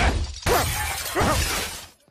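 Cartoon slapstick sound effects of a violent scuffle: a string of heavy crashes with smashing and breaking, roughly half a second to a second apart, stopping abruptly just before the end.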